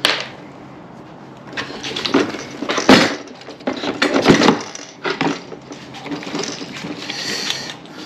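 Irregular clattering and scraping of hardware and parts being handled, with a sharp knock about three seconds in and another just after four seconds.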